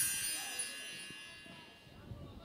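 A bright shimmering chime, a broadcast sound-effect sting, ringing out and fading away over about two seconds.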